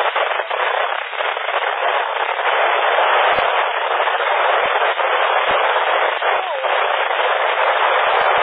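A narrow, hissy PMR 446 walkie-talkie channel heard through a radio receiver: a voice under heavy noise, too garbled to make out, with a few short low pops.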